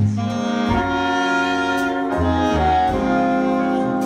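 Jazz big band horn section of saxophones, trumpets and trombones playing held chords in an instrumental fill, with low bass notes moving underneath.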